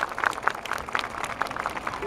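A crowd clapping, loose and irregular.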